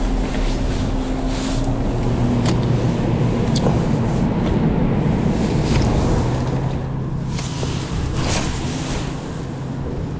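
A boat engine running at low speed with a steady drone, its pitch shifting once about two seconds in. A few sharp clicks sound over it.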